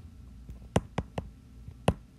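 Stylus tip tapping on a tablet's glass screen while handwriting, four sharp clicks, the last near the end the loudest.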